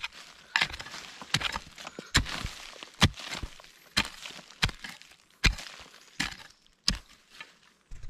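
Axe chopping into soil and roots around a spring bamboo shoot to dig it out: a rapid series of sharp strikes, roughly two a second with brief pauses.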